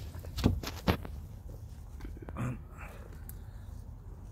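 Two sharp knocks about half a second apart as a chilli plant's root ball is handled, followed by soft rustling and crumbling of potting soil.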